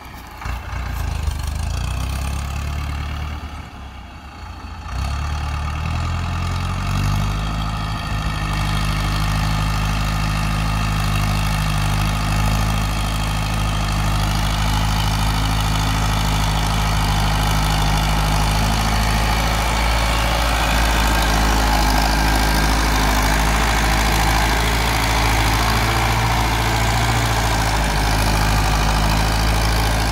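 Ford farm tractor's diesel engine working under load as it pulls a seven-disc plough through the soil. The engine rises in pitch and gets louder about five to eight seconds in, then runs steadily.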